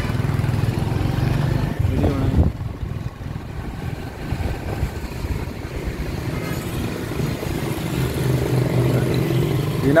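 Small motorcycle engine running steadily at low road speed, with traffic and road noise around it. It eases off about three seconds in and picks up again towards the end.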